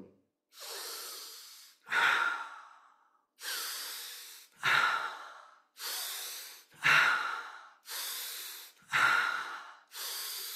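A man breathing deeply and rhythmically through a guided yogic breathing exercise. There are about four cycles, each a slow, softer inhale through the nose followed by a louder, sharper exhale through the mouth.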